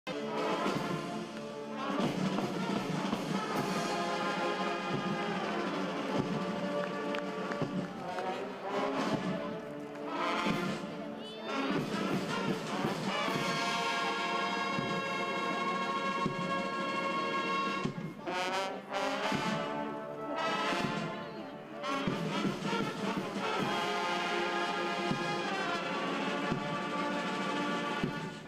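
Military marching band playing, led by massed brass: trumpets, trombones and sousaphones sounding sustained chords together.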